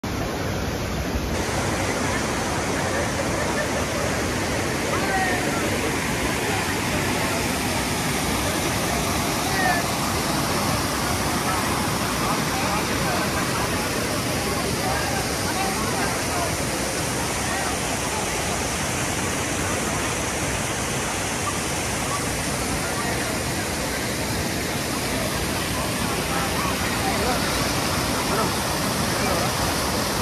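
Steady rush of a small waterfall and a river running over rocks, the water noise unbroken throughout.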